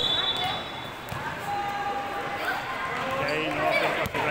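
A referee's whistle blown once and held for about a second at the start. Then children's voices and a basketball bouncing on the wooden hall floor, in an echoing sports hall.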